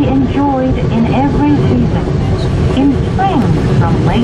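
A recorded English-language guidance announcement playing over the cabin loudspeaker of the Komagatake Ropeway aerial tramway. Under it runs the steady low rumble of the cabin travelling down the line.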